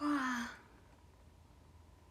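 A young woman's short wordless vocal sound, a sigh-like voiced 'hmm' or 'ah' lasting about half a second at the start, its pitch falling slightly, then only faint room tone.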